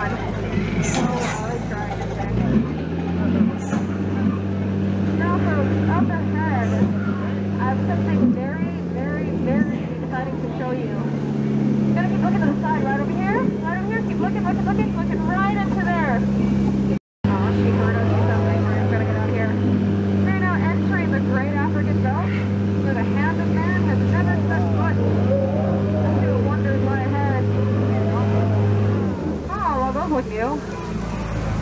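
Tour boat's motor running with a steady low hum; it picks up and settles about two and a half seconds in. Chirping sounds and indistinct chatter run over it, and everything drops out for a moment just past halfway.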